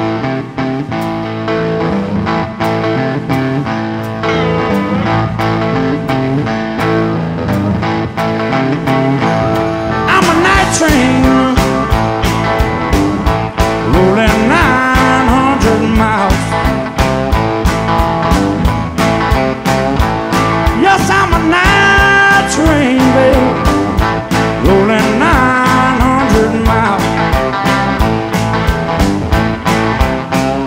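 Live blues band playing an instrumental intro, with electric guitar and a steady beat. The sound grows fuller and brighter about ten seconds in, with bent, gliding guitar notes.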